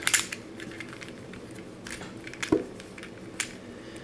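Corner-turning octahedron twisty puzzle being turned by hand: several irregular light plastic clicks as its layers are twisted through a move sequence.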